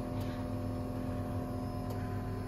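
A steady low hum with a few faint constant tones, from an unseen machine or electrical source, with two faint clicks, one near the start and one near the end.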